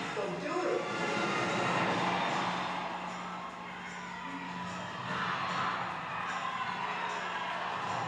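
Soundtrack of a concert documentary trailer played over a lecture room's loudspeakers: music and voices with crowd cheering.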